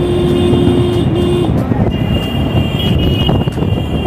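Busy road traffic heard from a moving motorbike: a steady rumble of engines and tyres, with a long held tone, likely a horn, through the first second and a half and a higher steady tone in the second half.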